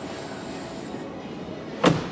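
Quiet showroom room tone with faint background music, then a single sharp knock near the end as a hand meets the car's open door pillar.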